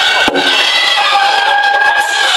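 Firecrackers going off in a dense, continuous crackle, with one sharper crack about a third of a second in.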